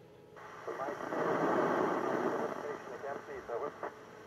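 FM radio downlink from the ISS's onboard amateur repeater, received on a Yaesu FT-847 transceiver: after a brief quiet moment the signal opens about half a second in, carrying indistinct, unintelligible speech under hiss.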